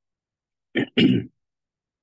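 A man clearing his throat once, a short two-part hem about a second in, with silence before and after.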